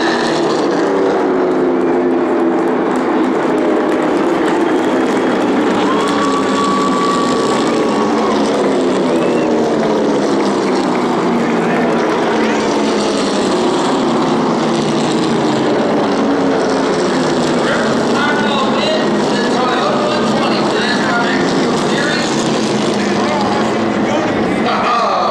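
Stock-car engines running at racing speed around an oval, several at once, their pitch sliding slowly up and down as the cars come past and go away.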